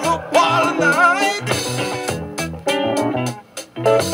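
Jazz-funk band recording with tight drums, electric bass and guitar playing a steady groove, with a melodic line over it. Near the end the music drops out for a moment before the groove comes back in.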